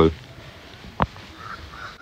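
A quiet outdoor pause with a single sharp click about a second in, followed by two faint, short bird calls in the distance.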